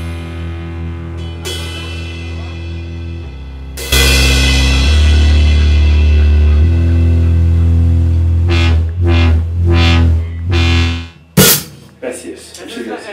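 Rock band with drum kit and cymbals playing the ending of a song live: held chords jump much louder about four seconds in, then a run of stop-start hits near the end closes on a final crash.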